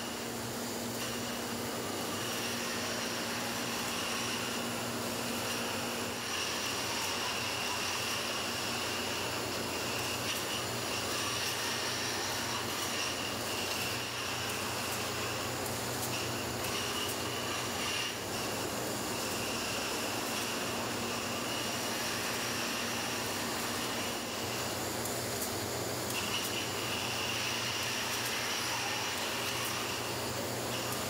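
Steady machinery noise of a meat-processing line, with a high steady whine that drops out briefly and returns, and a few faint clicks.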